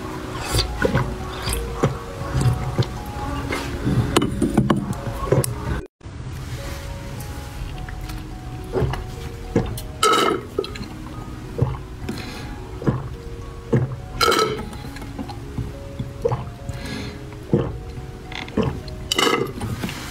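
Background music with a melody, over repeated sipping, slurping and gulping sounds of a jelly drink being drunk from a tube and through straws. The sound drops out briefly about six seconds in.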